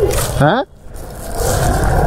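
A motor vehicle engine running with a steady low rumble, under people talking; a brief sharply rising sound comes about half a second in.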